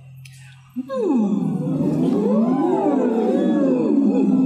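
A group of people phonating through drinking straws, sweeping up and down their vocal range in a straw-phonation (semi-occluded vocal tract) warm-up. It starts about a second in, with many overlapping voices sliding in pitch like sirens, a buzzing hum like a bunch of bees.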